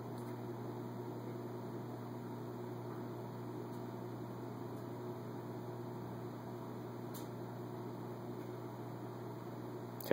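Steady low electrical hum with a faint even hiss: room tone.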